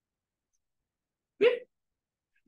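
Dead silence, then about one and a half seconds in a single brief syllable from a man's voice, rising in pitch, heard as "mais oui?".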